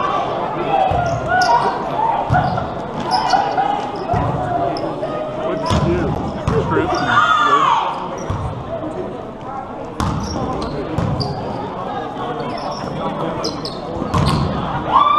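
Overlapping voices of many people talking at once in a large, echoing sports hall, with dull thuds scattered through.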